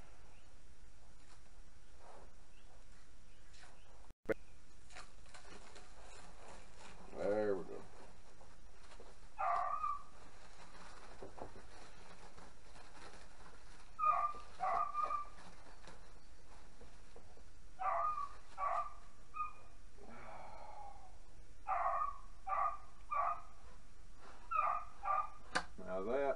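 Dogs barking in short bursts of two to four barks, repeating every few seconds, over the faint crackle of plastic wrap being pulled off a landing net.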